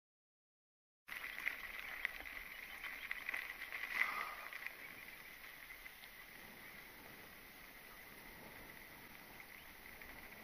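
Silence, then about a second in a mountain bike rolling over loose gravel: tyre crunch and rattling with scattered clicks, loudest in the first few seconds, settling from about five seconds in to a quieter, even rolling noise on dry dirt and grass. A faint steady high tone runs underneath.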